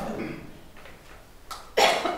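A person's single short cough near the end, just after a faint click.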